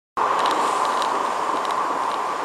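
Steady road and tyre noise heard from inside a moving car, with a few faint light ticks.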